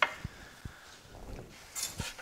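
A sharp knock at the start, then a couple of soft bumps and a brief rustle near the end: items being handled and cleared away on a kitchen worktop.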